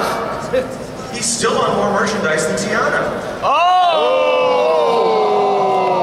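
Voices talking on a stage, then about three and a half seconds in, several performers break into a long held vocal 'aah' that jumps up quickly and then slides slowly down in pitch, a sung sound effect for something charging up.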